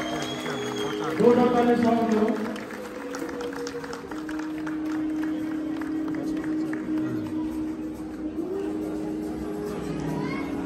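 Music with long, steady held notes, with a voice over it for a second or so near the start.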